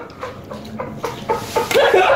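A group of men laughing, with a few short cracks as a raw egg is smashed and squashed on a man's head.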